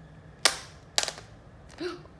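Two sharp clicks about half a second apart: small hard objects knocked against a tile floor as toys are moved about.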